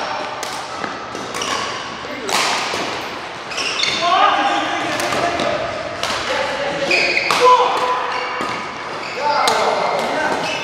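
Badminton doubles rally: rackets hitting the shuttlecock about once a second, each hit sharp and echoing in a large hall, with short squeaks between the hits.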